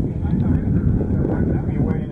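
People talking in the background over a steady low rumble of wind on the microphone.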